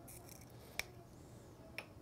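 Faint crinkling, then two sharp clicks about a second apart, the first the louder: hands handling small communion items at a table.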